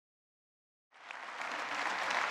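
Silence, then audience applause comes in about a second in and grows louder.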